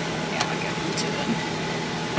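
Steady hum inside a car cabin from the idling car and its air conditioning, with a couple of faint ticks.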